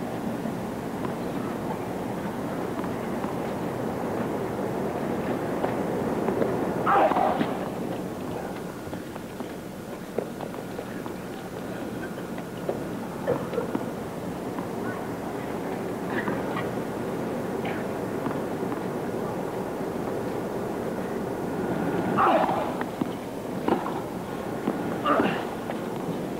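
Large tennis-stadium crowd murmuring steadily between points, with a few isolated voices rising out of it. A sharp knock comes near the end as play resumes.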